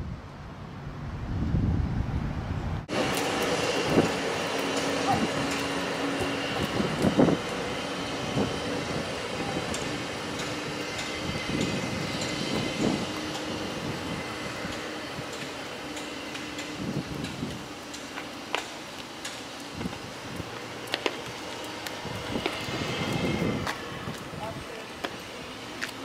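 Outdoor background noise with faint, indistinct voices and scattered light clicks. A low rumble fills the first few seconds, and the sound changes abruptly at a cut about three seconds in.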